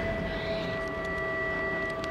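Background score: a steady chord of several sustained tones held through the pause in the dialogue.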